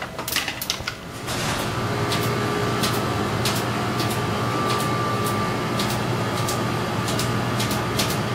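Automated laboratory robot running inside its enclosure: a steady motor and fan hum with a high whine sets in about a second in, with sharp mechanical clicks one or two times a second as the arm moves.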